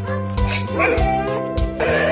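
Background music with a steady beat, over which dogs yip and whine, with a rising whine about halfway through. The dogs are heard through a smart display's speaker from a pet camera.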